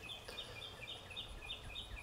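Faint bird chirping: a rapid string of short, high, slightly falling notes, about four a second, over low outdoor background noise.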